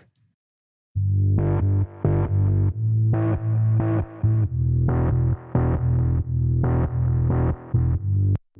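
Cut-up reversed piano chords played through a step-sequenced filter and an eighth-note ping-pong delay, pulsing in a chopped rhythm over low held notes that change pitch a few times. It starts about a second in, after a short silence.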